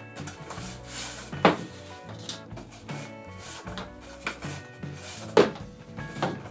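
Shock cord being pulled out of a cardboard rocket body tube and piled onto a table, with handling knocks, the sharpest about a second and a half in and a louder one near the end, over steady background music.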